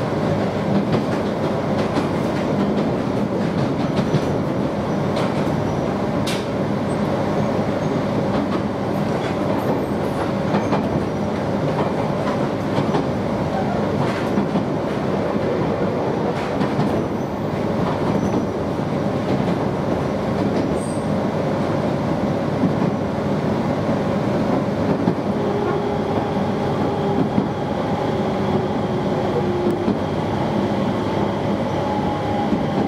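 Electric commuter train running, heard from inside the car: a steady rumble of wheels on rail with a constant hum. In the last few seconds a motor tone slowly falls in pitch as the train slows for a station stop.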